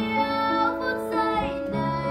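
A young girl singing a slow ballad while accompanying herself on an upright piano, her voice gliding between held notes over sustained piano chords.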